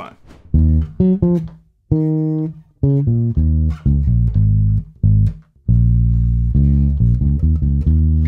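Electric bass guitar played fingerstyle: a syncopated funk bass line in E-flat minor, short clipped notes broken by rests, with a couple of longer held low notes in the middle.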